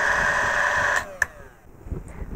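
APQS Turbo bobbin winder's motor running with a steady whine, spinning a slotless bobbin gripped by a rubber washer on the shaft. About a second in it is switched off and fades out, followed by a single sharp click.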